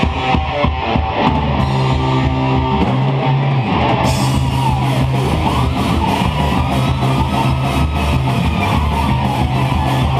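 Live heavy metal band playing loud: distorted electric guitar over a drum kit, steady and dense, the sound growing brighter about four seconds in.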